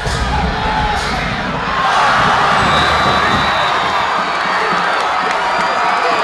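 Stadium crowd cheering and shouting during a football play, swelling louder about two seconds in.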